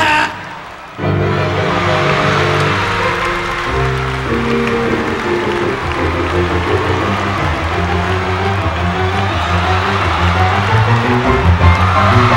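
A sung note ends just at the start. About a second in, live band music on electric keyboard and bass starts up and plays on, with a moving bass line under audience cheering and applause.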